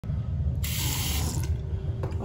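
Water from a two-handle chrome bathroom sink faucet running into the basin, with a bright hiss for about a second near the middle over a steady low rumble.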